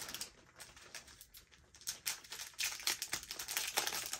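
Small clear plastic packaging bag crinkling and rustling as it is handled and opened, with irregular light clicks, busier in the second half.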